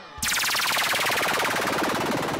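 A rapid, evenly spaced rattle like machine-gun fire in an electronic dance track, starting about a quarter second in after a brief dip in the music.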